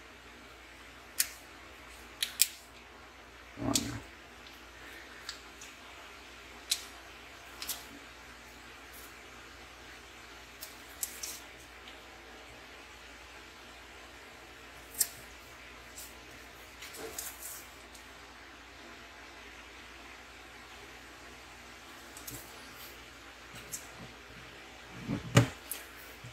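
Sparse light taps and clicks, one every few seconds, from fingers working a smartphone on a tabletop, over a faint steady hum.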